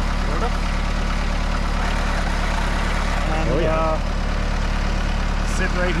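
Kubota compact tractor's diesel engine idling steadily.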